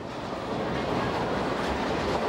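Bowling ball rolling down the lane, a steady rumble.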